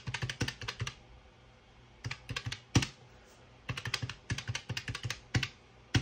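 Round keys of a desktop calculator clicking as numbers are punched in: three quick runs of presses with short pauses between them, and one more press near the end.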